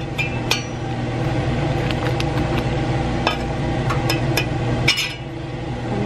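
A metal knife tapping and clinking against the side of a stainless steel pot several times as pats of butter are set into mashed vegetables, over a steady low hum.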